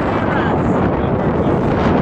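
Strong wind buffeting the microphone over choppy water splashing along a canoe's hull, a steady loud rush.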